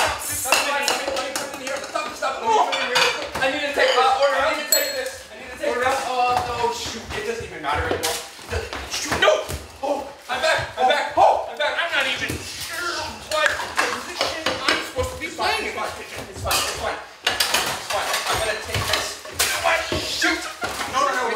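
Kitchenware clattering: plates, pans and cutlery knocking and clinking in quick irregular bursts while people scuffle, with voices shouting over it.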